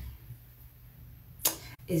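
Quiet room tone, broken about a second and a half in by a short sharp sound and then a brief dropout as speech resumes.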